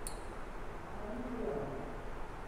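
Low steady room hum with a single short sharp click right at the start, and a faint voice-like murmur about a second in.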